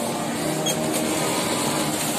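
A steady mechanical hum with a low drone, and a couple of faint high clicks about two-thirds of a second and a second in.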